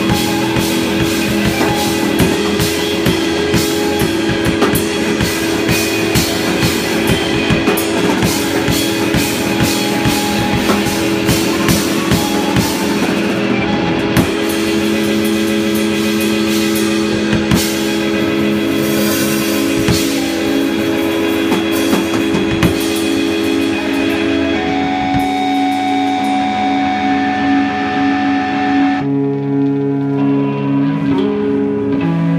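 Live rock band playing electric guitars and a drum kit. The drumming is dense for about the first half, then thins out. Near the end the drums stop and the guitars hold ringing notes.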